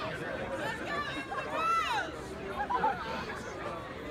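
Audience chatter: many people talking at once, with one voice calling out about halfway through.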